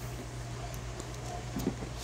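Slow inhale drawn through a small hand pipe held to a lighter flame: a faint steady draw over a low steady hum, with a soft click near the end.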